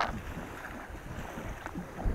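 Low wind rumble on the microphone, with a faint wash of shallow water at the shoreline.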